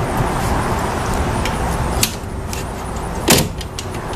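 Steady background rumble, with a light click about two seconds in and a sharper knock near the end as the aluminium bars of a horse trailer's drop-down window are handled.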